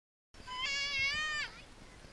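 A child's drawn-out, high, wavering vocal cry about a second long, dropping in pitch as it ends, like a playful bleat.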